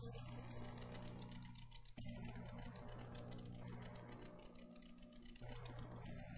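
Soft solo piano music on a digital piano: slow sustained chords, changing about two seconds in and again near the end.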